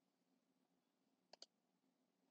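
Near silence broken by two quick clicks about a second and a half in, from a computer mouse being clicked.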